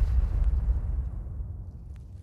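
The fading tail of an electronic TV intro sting's final boom: a deep rumble dying away steadily over two seconds.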